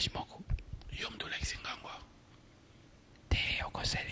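Soft, breathy whispered speech close to a microphone, in two spells with a quiet gap of about a second and a half in the middle.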